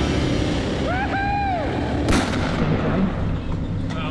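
Adventure motorcycle running steadily at road speed, its low engine drone mixed with heavy wind buffeting on the camera microphone. A short tone rises and falls about a second in, and there is a sharp knock just after two seconds.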